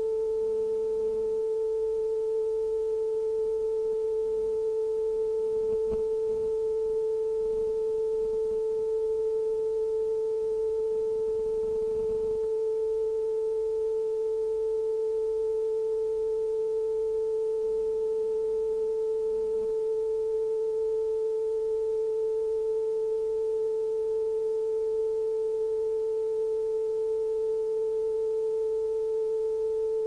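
Television closedown tone: a single steady, unbroken mid-pitched tone with faint overtones, sent out after the end of transmission to tell viewers the channel has closed for the night.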